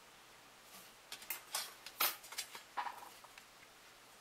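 Thin photoetched metal sheets being handled and shuffled: a run of light clicks and rattles starting about a second in, the sharpest near the middle.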